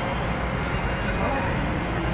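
Steady rumbling outdoor background noise with faint, indistinct voices.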